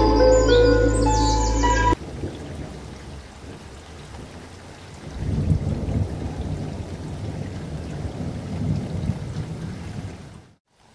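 Background music with bird calls for about two seconds, then an abrupt cut to a crackly, rustling noise of a knife working through the skin of a hand-held guava, louder from about five seconds in.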